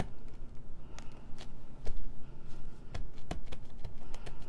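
Hands pressing a glued paper strip onto a card, with soft paper rustling and a few short light taps and clicks.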